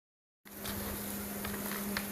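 Single-shaft waste shredder running empty with a steady hum. The sound drops out completely for about the first half second, then resumes.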